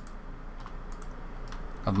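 Faint, scattered clicks from a computer keyboard and mouse as the shift key is held and a light is dragged in the software, over a low steady hum.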